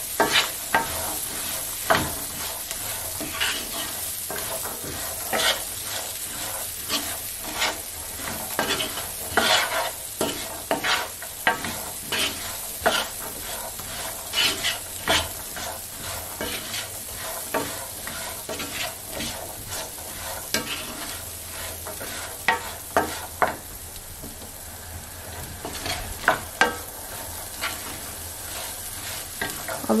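Chickpeas and onion frying in oil in a nonstick pan, with a steady sizzle, while a wooden spoon stirs them: irregular scrapes and knocks of the spoon against the pan.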